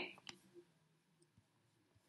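Near silence with a few faint computer mouse or trackpad clicks, spaced irregularly, as the on-screen pen tool is worked.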